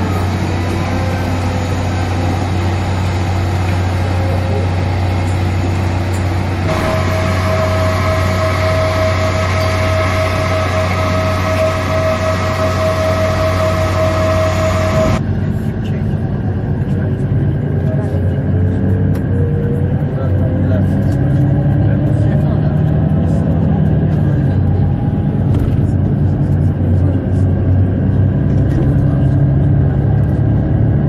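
Steady cabin hum of a parked Airbus A320-214: a low drone with a high steady tone joining a few seconds in. About halfway through it gives way to the open-air rumble of the airport apron, with a slowly rising whine passing through.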